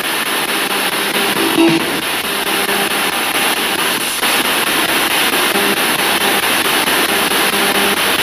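Spirit box sweeping through radio stations: a steady hiss of static broken by brief snatches of broadcast sound and music.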